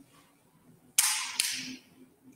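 Two sharp snaps about half a second apart, the first trailing into a brief crackle: the large altar bread being broken by the priest at the fraction of the Mass.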